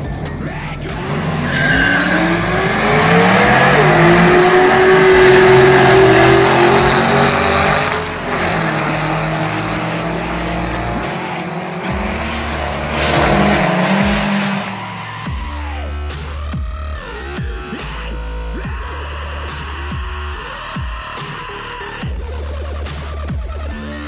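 Drag cars launching and accelerating hard down the strip, among them a supercharged Shelby GT500 V8. The engine pitch climbs, drops at a gear change about three and a half seconds in, and climbs again before the sound fades at about eight seconds. Music plays underneath and takes over in the second half with a dubstep wobble.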